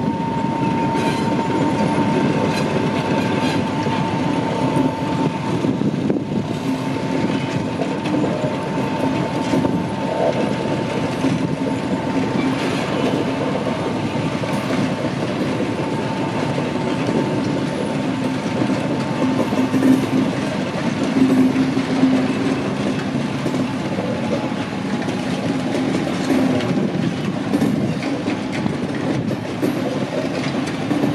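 MÁV M62 diesel locomotive's two-stroke V12 engine running as it slowly hauls a train of tank wagons, the wagon wheels clicking over the rail joints. A thin, steady high whine runs through most of it and fades out near the end.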